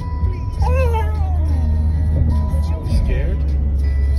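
A frightened Labradoodle crying: a wavering, high whine about a second in and a shorter one around three seconds in. Under it runs the steady low rumble of road noise inside a moving car.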